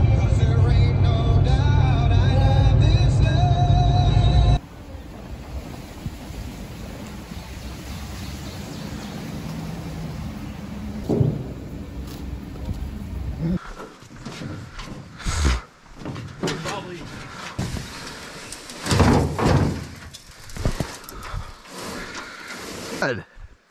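Music for the first few seconds. Then the steady rumble of a vehicle driving a dirt track, with a bump about eleven seconds in. From about fourteen seconds there are irregular knocks and scraping as an aluminum canoe is unloaded and dragged down a dirt path.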